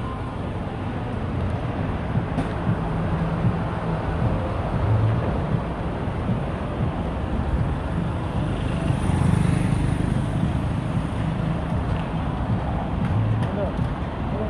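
Road traffic noise: a steady low rumble, growing louder around the middle as a vehicle passes.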